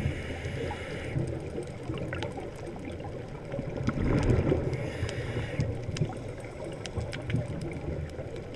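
Scuba diver's regulator breathing heard underwater through a camera housing: a hiss of inhaling, about a second long, at the start and again around four seconds in, with a low bubbling rumble of exhaled air between. Scattered faint clicks run through it.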